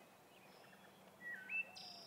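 A bird singing a short phrase over faint background: clear whistled notes that step down and then jump up in pitch, followed by a higher buzzy note, in the second half.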